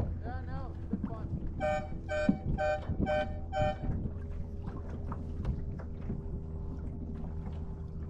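A horn sounding five short, identical blasts in quick succession, about half a second apart, over steady wind and water noise. A brief voice-like sound comes just before the blasts.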